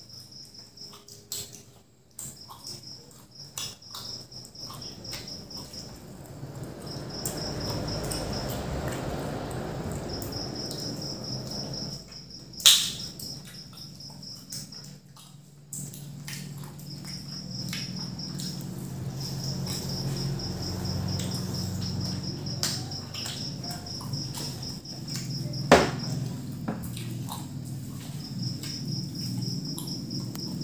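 An insect chirping in repeated trains of rapid, high-pitched pulses that stop and start, over a low rumble. Two sharp knocks, about halfway through and near the end, are the loudest sounds.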